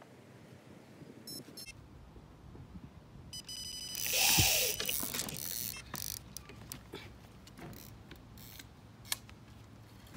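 Electronic carp bite alarm sounding for a take: a short bleep about a second in, then a longer run of tone a couple of seconds later as a fish pulls line. It is followed by a loud burst of noise as the rod is struck and lifted, then scattered clicks and knocks of the rod and reel being handled.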